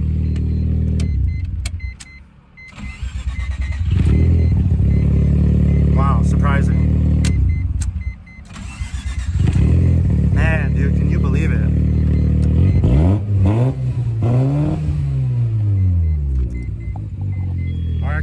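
1993 Mazda RX-7's twin-turbo rotary engine idling. It is shut off and restarted twice, cutting out about two seconds in and again about eight seconds in. Near the end it is revved up and allowed to fall back once.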